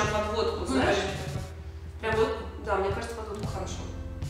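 A person's voice, in two stretches, about a second and a half each, with a short break between.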